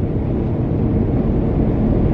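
Steady low rumble of road and engine noise inside the cabin of a moving car.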